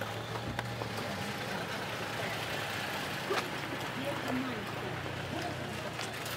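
Steady low hum of vehicles in a parking lot, with a few faint clicks and rattles.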